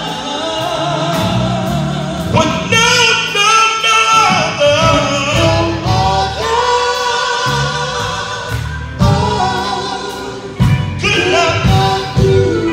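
Live gospel quartet of male voices singing in harmony, with some held notes wavering in vibrato, backed by electric bass, drums and keyboard. Drum hits fall about two seconds in and again near the end.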